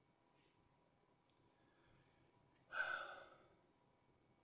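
A person sighs once, a short breath out about three-quarters of the way through that fades away; otherwise near silence, with a faint click a little over a second in.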